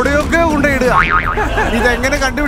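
Voices talking and calling out over background music, with a wobbling rise-and-fall in pitch about a second in.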